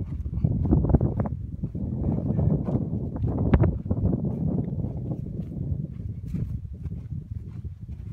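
Wind buffeting the microphone, with a hiker's footsteps on a grassy trail; the rumble eases toward the end.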